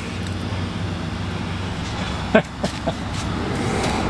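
Single-cylinder clone small engine with a newly finished exhaust pipe, running steadily. A few sharp clicks come between about two and a half and three seconds in.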